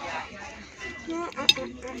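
A single sharp clink of cutlery about one and a half seconds in, followed by a few smaller ticks, over faint background voices.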